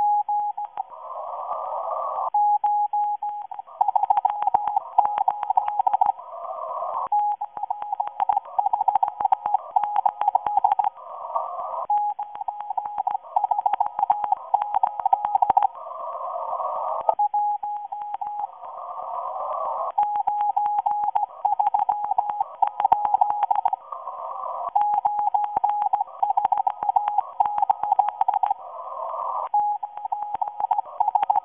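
Shortwave radio receiving a Morse code transmission, said to be a Russian station sending messages to agents in the USA. A single beeping tone is keyed on and off in groups through a narrow receiver passband. Crackling static runs throughout, and a rush of band noise fills the gaps between groups every few seconds.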